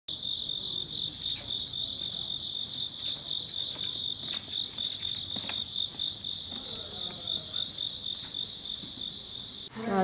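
An insect trilling steadily on one high, finely pulsing note, with a few faint taps over it; the trill cuts off abruptly near the end.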